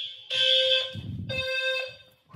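A ceiling smoke alarm going off during a power outage, sounding three long, shrill beeps about half a second apart. A brief low bump of handling noise falls between the second and third beep.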